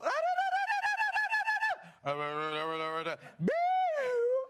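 A man's voice doing vocal warm-up exercises: a high, wavering note held for nearly two seconds, then a low steady note for about a second, then a whoop sliding up to a high held note near the end.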